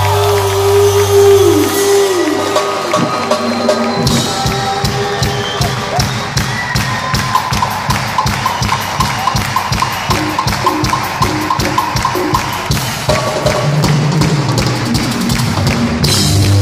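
Live rock band playing an instrumental passage: sustained low notes with a falling slide in the first few seconds, then, from about four seconds in, a quick steady percussion rhythm over the band with a short high note repeated for several seconds.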